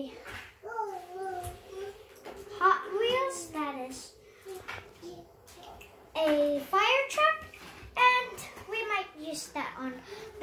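A child's voice talking and babbling in short stretches, with pauses between, unclear enough that no words were made out.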